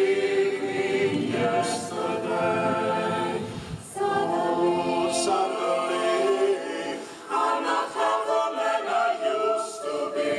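Mixed choir singing a cappella: sustained chords of many voices in phrases, with short breaks about three and a half and seven seconds in.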